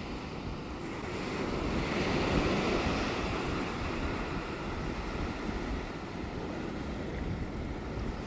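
Sea surf washing and wind on the microphone, a steady rush that swells about two seconds in.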